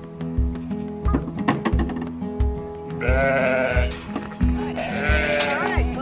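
Sheep bleating: one long, wavering bleat about halfway through and shorter calls near the end, over background music with a steady beat.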